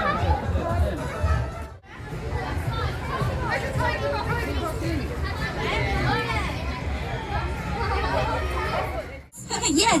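Indistinct chatter of several people talking at once, no single voice clear. It is broken by two brief dropouts, about two seconds in and near the end.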